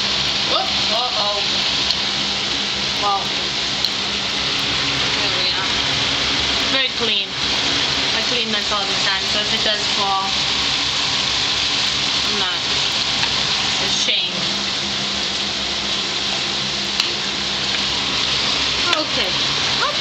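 Meatballs frying in sunflower oil in a shallow pan, a steady sizzle that runs on without a break.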